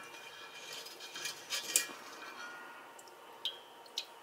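Light metallic clinks and taps of a wire-mesh strainer knocking against the rim of a metal mixing bowl as it is handled and lifted: a small cluster of taps about a second in and a couple more near the end.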